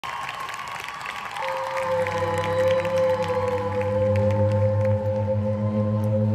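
Live rock band starting a song: sustained notes swell in, with a strong held tone entering about a second and a half in and low notes joining shortly after, the sound building in level, over crowd noise.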